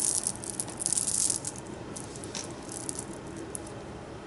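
A handful of small round loose beads rattling and clicking together in cupped hands, busiest in the first second and a half, then a few lighter clicks.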